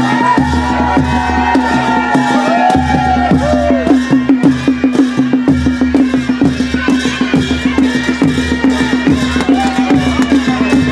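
Live baja folk music for dancing: a fast, even percussion beat of about four to five strokes a second over a steady low drone. A wavering melody line runs above it through the first four seconds.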